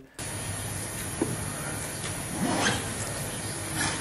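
Steady background hiss and room noise from a played-back press-conference recording, with a few faint indistinct sounds in it.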